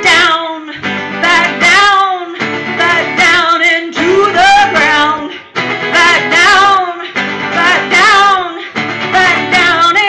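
Live song: a woman singing in phrases over a strummed acoustic guitar.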